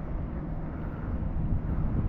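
Steady low rumble of distant motorway traffic, with wind on the microphone.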